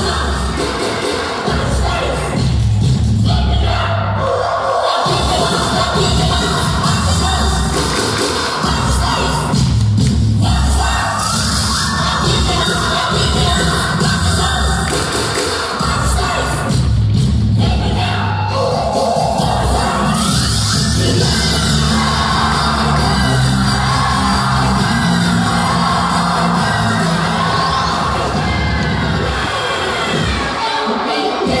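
A song with singing played loud over the circus sound system, with crowd noise and some cheering from the audience mixed in.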